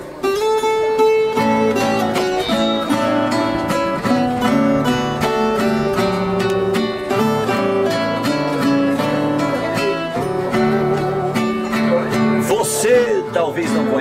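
A viola caipira (Brazilian ten-string guitar) and an acoustic guitar playing a plucked instrumental introduction together in Brazilian country (moda de viola) style, note after note without pause.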